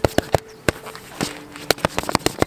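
Hands and forearms striking a padded vinyl training dummy in a quick Wing Chun combination: a rapid, irregular run of sharp slaps, about eight in two seconds.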